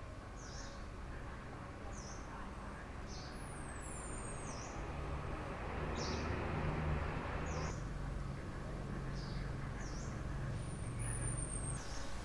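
A bird repeating a short high chirp about once a second, with a thinner, higher falling whistle twice, over a steady low hum of outdoor background noise.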